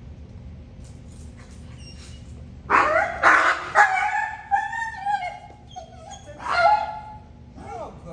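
German Shepherd barking and whining: a burst of sharp barks about three seconds in runs into long, high whines, with another loud bark-like call near seven seconds.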